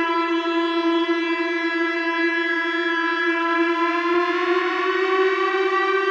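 Rainger FX Drone Rainger pedal's built-in tone generator holding a steady electronic drone note, rich in overtones, its pitch edging slightly upward in the second half as a knob is turned. A brief click about four seconds in.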